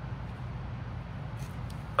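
Steady low background hum, with a faint tick or two about a second and a half in.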